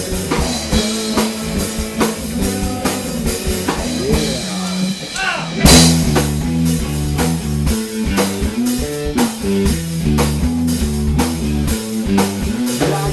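A rock band plays an instrumental passage on electric guitars and a drum kit, with a steady beat and a moving low line. A little before halfway the drums drop out under sliding guitar notes. Then the full band comes back in on a loud crash.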